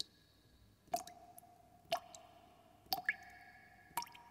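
Quiet intro sound of drip-like plinks, about one a second, each leaving a short ringing tone at a different pitch, with two close together just after the third.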